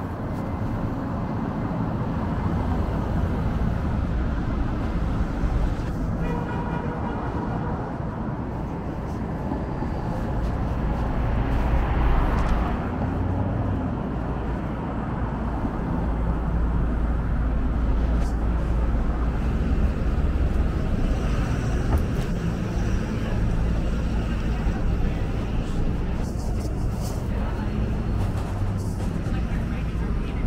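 Downtown street traffic: cars and other vehicles driving past at close range, a steady low engine and tyre rumble. A louder vehicle passes about twelve seconds in.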